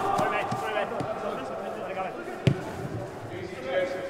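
A football kicked on artificial turf, one sharp thud about two and a half seconds in, echoing in a large indoor sports hall, amid players' distant shouts and calls.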